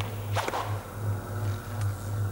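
A sharp whoosh sound effect about half a second in, over a low pulsing drone.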